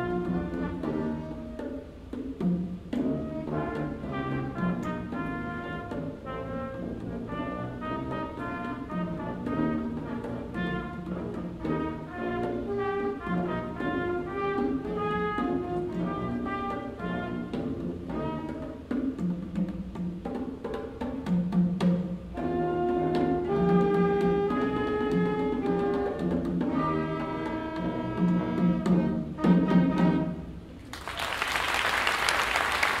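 Adult community wind band of brass, woodwinds and percussion playing a piece, with brass and drums to the fore, louder in the last few seconds.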